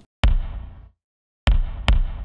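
Kick drum played three times, each hit followed by a short, dark room reverb that is cut off abruptly by a noise gate: classic 80s gated-reverb sound. The last two hits come about half a second apart.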